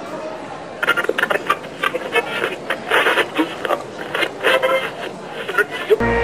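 Indistinct voices and chatter of people in a busy indoor hall. From about a second in, irregular sharp clicks and clatter come through.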